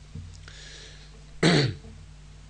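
A man clears his throat once, sharply, about a second and a half in, after a faint breath.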